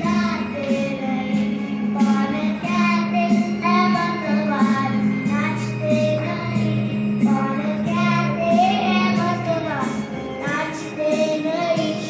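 A boy singing a song, accompanied by a Yamaha electronic keyboard playing held chords over a steady beat.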